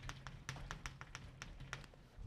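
Chalk writing on a blackboard: a quick, faint run of light taps and clicks, about five or six a second, over a low steady hum.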